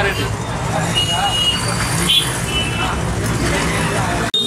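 Street crowd noise: a steady low rumble of motorcycle and vehicle engines under scattered voices, with two short high-pitched tones, about a second in and again past the middle.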